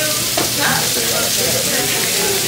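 Steady sizzling hiss of a restaurant kitchen stove and griddle while a wire whisk stirs a pot of grits in a stainless steel pot.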